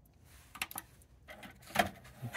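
Clicks from the Sony MXD-D3 CD/MiniDisc deck as it is switched on and its CD tray is set opening: a couple of light clicks about half a second in, a brief mechanism hum, then a sharper click near the end.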